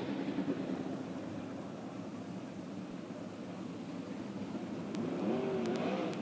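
Sprintcar V8 engines running at low revs in the background, a steady drone, with a faint rise and fall in pitch near the end.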